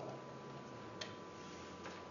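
Two faint, short clicks a little under a second apart, about a second in and near the end, over quiet room tone with a steady faint hum.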